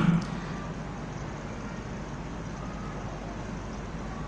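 Steady background noise with a low hum during a pause in speech, with no distinct event standing out.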